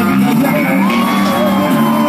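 Loud live music from a concert stage, with a long held note, and the crowd whooping and shouting.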